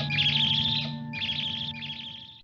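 Tribble sound effect: high, fast warbling trills in short runs over a low steady hum, growing quieter toward the end.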